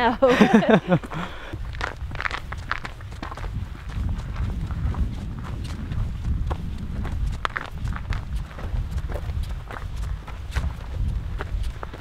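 Hikers' footsteps on a snow-dusted, icy rocky trail: a run of irregular, uneven steps. Low wind rumble on the microphone underneath.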